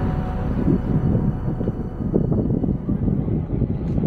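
Low, gusting rumble of wind buffeting the camera's microphone as the camera is carried high on a pole, with background music fading out in the first second.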